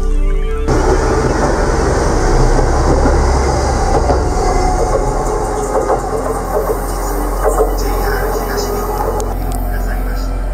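A train passing close by: a steady, dense rush with faint clicking wheels over a low hum, setting in about a second in, mixed with soft background music.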